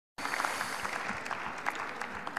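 Applause from members of parliament seated in the chamber: many hands clapping.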